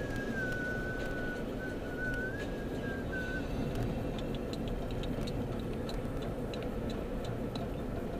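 Steady road and engine noise inside the cabin of a moving car. A thin, high, slightly wavering whistle runs through the first three seconds or so, and light ticks follow in the second half.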